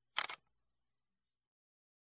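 A brief sharp double click, two quick snaps over about a quarter of a second, shortly after the start.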